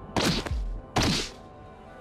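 Two heavy impact sound effects for a fight scene, about a second apart, each a sudden hit with a falling tail, with a deep thud after the first, over background music.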